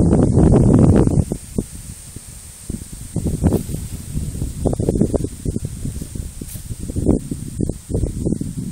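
Wind buffeting the microphone in uneven gusts, a low rumbling rush that is strongest for about the first second, then eases.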